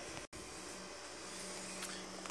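Low, steady background noise with a faint steady hum, broken by a momentary dropout to silence about a quarter second in where the recording cuts.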